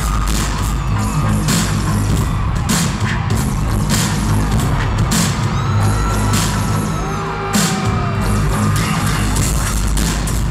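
Loud live concert music through an arena sound system: a heavy bass groove with sharp drum hits about twice a second and no vocals.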